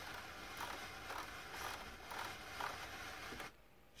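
Car radio's rotary knob being turned to scroll through the station list, heard faintly over a steady hiss, stopping shortly before the end.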